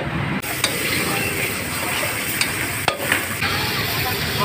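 Meat sizzling as it fries in a large aluminium wok, stirred and scraped with a metal spatula, with a few sharp clicks of the spatula against the wok.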